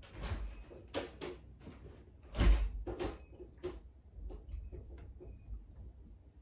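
A door being opened and shut, with a loud thud about two and a half seconds in among lighter knocks and clatters.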